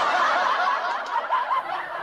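A man snickering: a soft, breathy chuckle that slowly fades.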